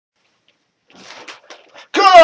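Faint rustling of newspaper pages being picked up and handled, starting about a second in. A man's loud voice begins right at the end.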